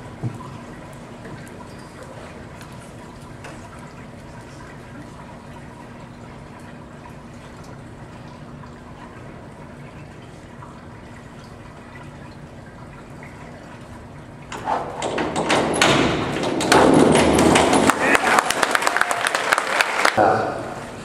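Hushed indoor pool hall with a faint steady hum for about fourteen seconds, then a springboard dive's water entry and a crowd of spectators breaking into loud applause and cheers that carry on to the end, echoing off the hard walls.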